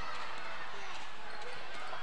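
Steady gymnasium background noise with faint, distant voices of players and spectators during play.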